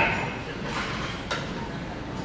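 Gym room noise with a sharp, loud knock at the very start that rings briefly, and a lighter click about a second later.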